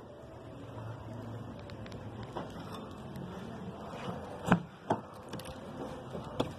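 Low, steady background hum with two sharp knocks about half a second apart near the end; no engine is running.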